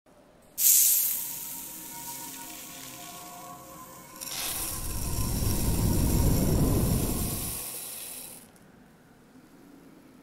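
Intro-animation sound effects: a sudden bright hit about half a second in that dies away over a second or two, leaving faint lingering tones, then a swelling whoosh with a deep rumble from about four seconds in that fades out about two seconds before the end.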